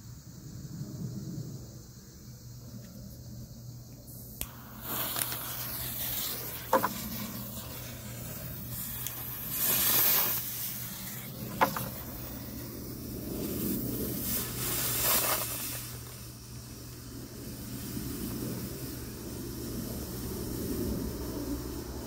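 Smoke bomb burning with a loud, steady hiss that starts suddenly about four seconds in and swells twice. Two sharp ticks stand out in the middle.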